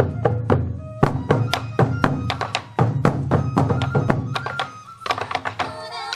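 Sansa Odori festival music: waist-slung taiko drums struck with sticks in a quick, even rhythm, with a flute melody above. About five seconds in the drum strokes thin out and the melody carries on with faster notes.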